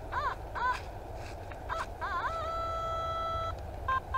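Nokta Makro Simplex+ metal detector signalling a buried target as the coil passes over it. It gives a couple of short warbling chirps, then a rising warble into a steady high tone held for about a second that cuts off suddenly. The long signal sounds like a longish object.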